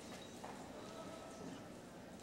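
Faint arena ambience with one soft knock about half a second in.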